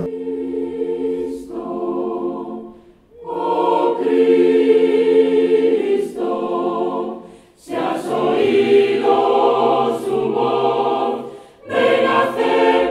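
Mixed choir of men and women singing sustained chords in phrases of about four seconds, with short breaks between them.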